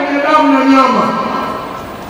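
A man's voice through a hall PA system, holding one long drawn-out syllable for about a second, then falling in pitch and fading out, echoing in the large room.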